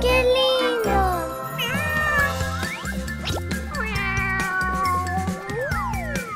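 Meows from an interactive plush kitten toy, several drawn-out calls that bend up and down in pitch, over cheerful background music.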